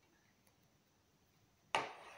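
A quiet room, then one sharp knock near the end that dies away quickly.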